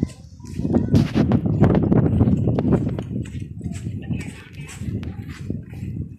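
Footsteps on sand, an uneven run of soft thuds, with a low rumble underneath.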